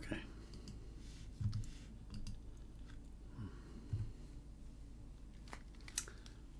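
Faint clicks and handling noise, with a few soft low hums of voice, and a sharp click near the end as over-ear headphones are lifted off.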